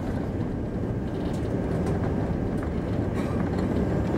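Steady low rumble of jet airliner cabin noise, engines and rushing air heard from inside the cabin.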